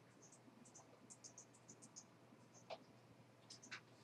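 Faint, irregular clicking of computer keyboards and mice being typed on and clicked, with a couple of sharper clicks near the end, over a faint steady low hum.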